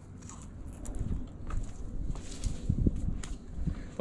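A freshly cut evergreen branch rustling and crackling as it is handled, with irregular low thumps.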